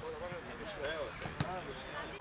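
A football being kicked on a grass pitch, one sharp thud about one and a half seconds in, among players' voices calling out.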